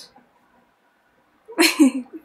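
Near silence for over a second, then a short, sudden breathy burst from a person's voice about one and a half seconds in.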